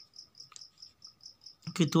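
A cricket chirping: a steady, rapid train of short high-pitched pulses, about five a second, with a faint steady tone underneath.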